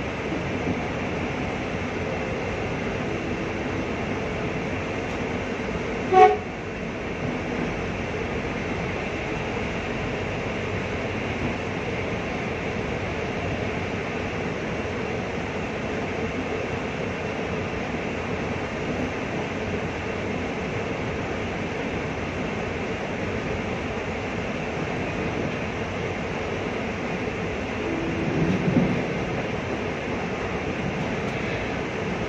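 Electric commuter train running along the track, heard from inside the driver's cab as a steady rumble, with one short horn blast about six seconds in.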